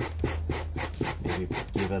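A small wire brush scrubbing the surface of polystyrene foam in quick, even back-and-forth strokes, roughly four to five a second. It is texturing a carved and sanded faux stone so that it looks less smooth.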